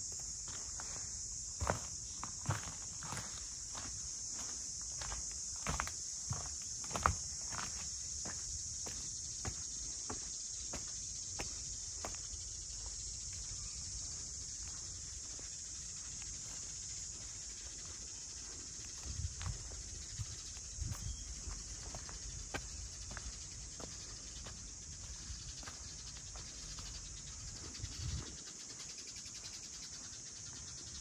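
Footsteps of a person walking on stone paving and steps, about two steps a second and clearest in the first half, over a steady high-pitched drone of insects.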